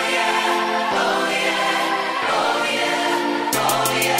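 Choir singing at the opening of a song. A steady drum beat comes in about three and a half seconds in.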